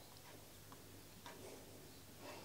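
Near silence: faint, regular ticking about twice a second over a low steady hum.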